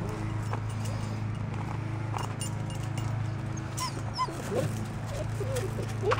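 Puppies whimpering, with a few short high-pitched yips in the second half, over a steady low hum.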